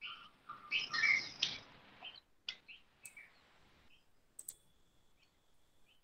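Faint chirping, like small birds, heard through an open microphone on a video call, with a few soft clicks scattered through it.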